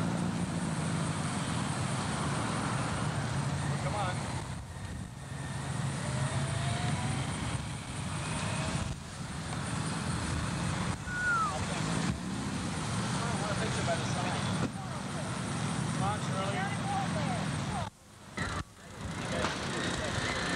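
Outdoor background of indistinct voices over a steady motor hum. The sound drops out briefly twice near the end.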